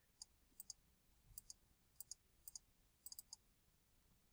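Faint computer mouse clicks, about a dozen at irregular spacing, against near silence.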